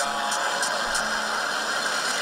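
A steady rushing noise coming through a small portable radio's speaker, which takes over as the tail of a sung note fades about half a second in.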